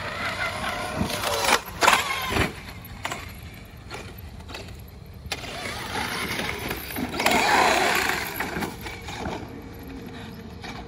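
Traxxas X-Maxx RC monster truck's brushless electric motor whining up and down with the throttle as it drives, with tyre noise. Sharp knocks come about one to two and a half seconds in, and a longer burst of throttle about seven to eight seconds in.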